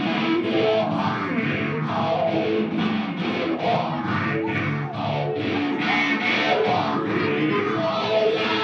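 Live electric guitar, a Les Paul-style instrument played with a violin bow, in loud rock music with a steady rhythmic pulse.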